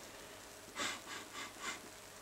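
A person sniffing a glass of beer held close to the nose: a few short sniffs in quick succession, starting about a second in.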